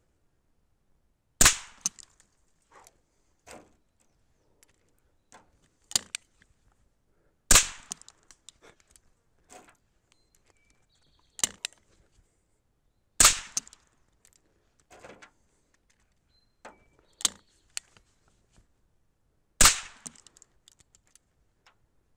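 Chiappa Little Badger single-shot break-action rifle firing four sharp shots, about six seconds apart. Quieter clicks and clacks between the shots are the action being broken open and reloaded.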